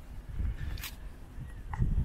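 Wind buffeting the microphone as a low rumble, with a few faint clicks and rustles of handling as the phone is moved.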